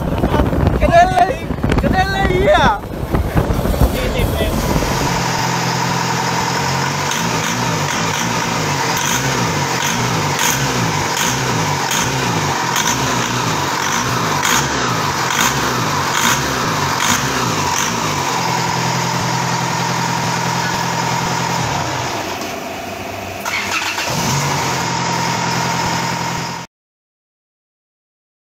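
For the first few seconds, wind rushes and voices are heard aboard a fast-moving longtail boat. The sound then switches to a heavily modified twin-turbo diesel longtail-boat engine running steadily on a test stand, with an even firing pulse and a thin, steady high whine above it. Near the end the engine sound drops briefly, then picks up again.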